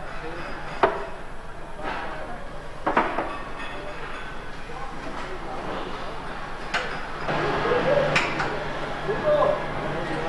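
Factory workshop noise: sharp metallic clanks and knocks every second or few over a steady background din, with faint voices in the background. A low steady hum comes in about seven seconds in.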